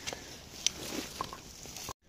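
Footsteps and rustling through dry leaf litter and fir undergrowth, faint, with a few light clicks of twigs underfoot; the sound cuts off suddenly near the end.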